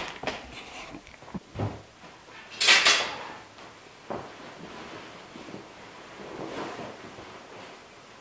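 A few light knocks, then a loud swish about three seconds in, followed by the soft rustle of a heavy coat's fabric as it is pulled on.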